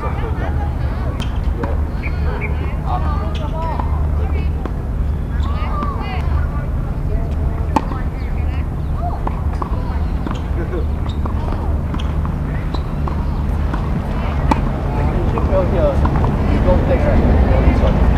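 Faint talk over a steady low rumble, with a few sharp knocks of tennis balls struck by racquets.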